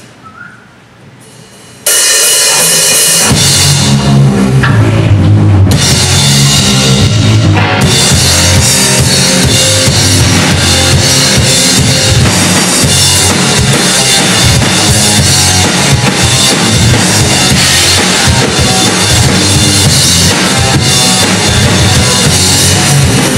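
Rock band playing live on drum kit and electric bass. After a brief hush the full band comes in suddenly about two seconds in, with kick drum, snare and cymbals, and the low end fills out a second or so later.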